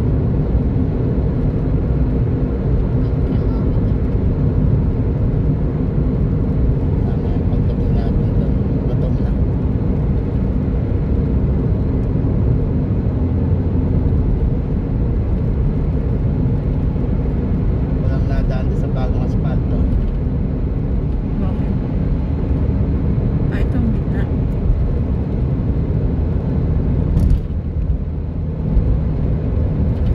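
Steady low rumble of engine and tyre noise heard inside a car's cabin while it cruises at highway speed, with a short click a few seconds before the end.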